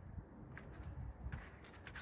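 Faint low wind rumble on the microphone, with a couple of soft brief noises.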